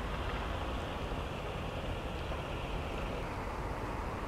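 Steady outdoor background noise: a low, even rumble typical of distant city traffic, with some wind on the microphone.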